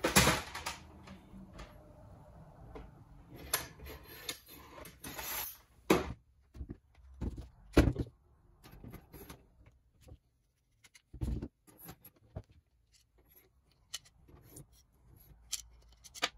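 Scattered metal clicks and clinks as rocker arms, springs and pedestals are worked off a Triumph TR6 rocker shaft and set down on a wooden bench. There are sharper knocks about six, eight and eleven seconds in.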